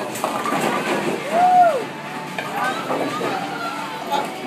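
Voices calling out, with one drawn-out cry that rises and falls about a second and a half in, over the steady background noise of a bowling alley.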